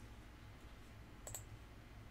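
A single computer mouse click a little over a second in, against near-silent room tone with a faint low hum.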